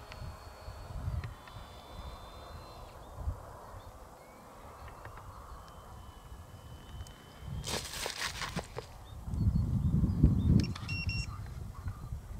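Wind rumbling on the microphone while the RC wing's electric motor is switched off, so no motor sound is heard. About eight seconds in comes a brief crackling scrape, followed by louder rumbling as the camera is swung around.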